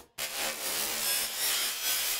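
Cartoon flash sound effect: a dense, noisy rush with a crackling, electric-zap character that starts abruptly after a moment of silence and holds steady.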